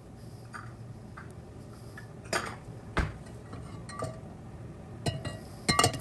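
A handful of separate light clinks and knocks of an iron wok and kitchenware being handled on the stove, with a cluster of them near the end.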